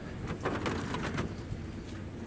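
A few light clicks of rough native copper pieces knocking together as a gloved hand picks them off a wire-mesh screen, with a bird calling in the background.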